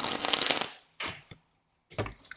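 A deck of tarot cards being shuffled by hand: a dense run of fast card flicks lasting under a second, then a shorter burst about a second in.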